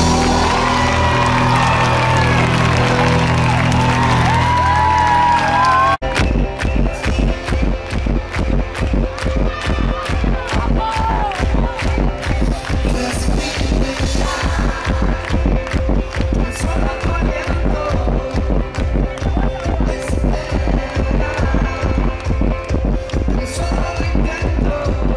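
Live band music: the close of a song with the crowd cheering over it, then an abrupt cut about six seconds in to the start of the next number, an even, fast low beat under a held synth tone.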